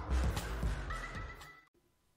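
Intro music with a regular beat and held high synth-like tones, fading and then cutting off abruptly near the end.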